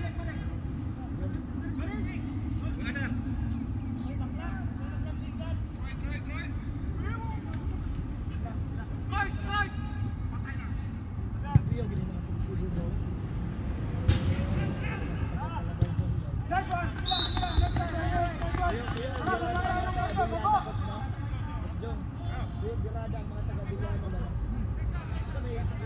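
Footballers shouting and calling to each other across an outdoor pitch over a steady low rumble, the calls strongest in the second half. A few sharp knocks stand out around the middle, the loudest about two-thirds of the way in.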